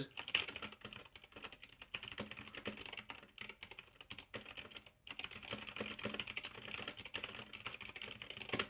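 Continuous two-handed typing on an Ajazz K685T mechanical keyboard with red (linear) switches: a fast, relatively muted clatter of keystrokes.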